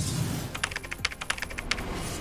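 Computer-keyboard typing sound effect: a quick run of about a dozen keystroke clicks, starting about half a second in and stopping just before the end, as text is typed onto the screen.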